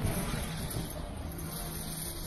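A car driving slowly on a wet street, its engine and tyre noise heard from inside as a steady rumble.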